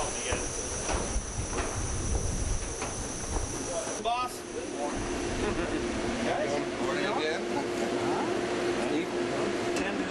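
Steady background noise on the launch pad structure: a low rumble like wind on the microphone, with a steady high hiss. About four seconds in, the sound cuts to a steady hum with faint, indistinct voices.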